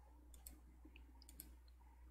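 Near silence: room tone with a low steady hum and a few faint clicks.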